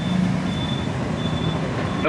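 Steady drone of vehicle engines and road traffic, with a faint high-pitched beep recurring a few times.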